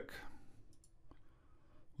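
A couple of faint computer mouse clicks against quiet room tone.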